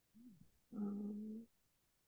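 A faint, short murmur, then a person's steady hum ("mmm") held for under a second at one flat pitch, the sound of someone thinking over an answer.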